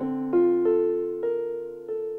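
Electric-piano-style keyboard playing a slow melody: about five single notes struck in turn, each ringing out and fading.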